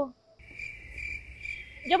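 Steady high-pitched insect trill that starts suddenly about half a second in, with a faint low rumble beneath it.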